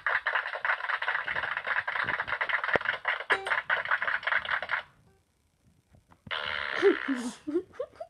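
A dense, crackling noise, like an added sound effect, running for about five seconds and cutting off abruptly. After a second of near silence comes a shorter burst of similar noise with a voice gliding up and down in pitch.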